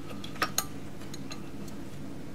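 Two sharp clicks about half a second in, then a few faint ticks, as the old metal-cased telephone is handled and set down; otherwise a low steady background.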